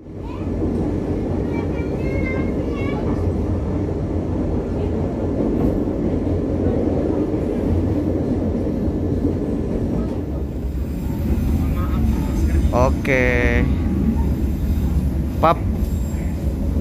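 Steady low rumble of a passenger train on the move: wheels running on the track and the coach travelling at speed. Brief voices break in near the end.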